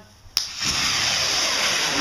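Homemade gunpowder rocket launching: a sharp pop about a third of a second in, then the motor's loud, steady hissing rush as it thrusts upward.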